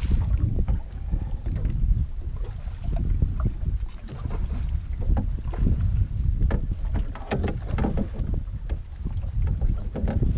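Wind rumbling on the microphone in a small open boat, with scattered short knocks and splashes while a hooked mulloway is worked to the boat's side on a bent rod.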